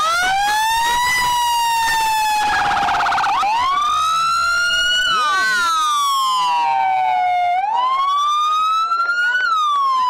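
Emergency-vehicle sirens on passing fire and police vehicles wailing in slow rising and falling sweeps, with a brief rapid warble about three seconds in.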